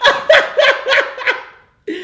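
A man laughing hard in a quick run of about six bursts that fade out over a second and a half.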